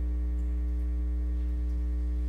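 Church organ holding a deep, steady low pedal note, with a couple of fainter held notes above it, as a piece ends.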